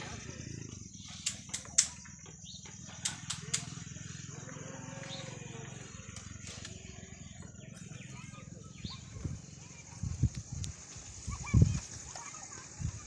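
Handling noise in the crown of a palmyra palm: a few sharp clicks early on, then a run of dull thumps and knocks near the end, as a person moves among the frond stalks and fruit bunches. A steady faint hiss and low hum run underneath.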